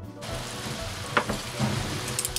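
Bratwursts simmering in beer and onions in a cast iron skillet, the liquid sizzling and bubbling steadily. A single sharp click comes about a second in.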